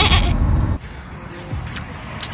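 Steady road rumble inside a moving car, with a short bleat right at the start. About a second in it cuts off suddenly to a much quieter outdoor background.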